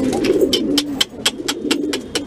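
Shirazi pigeons cooing as a low, steady murmur, with a quick regular run of sharp clicks, about four a second, over it.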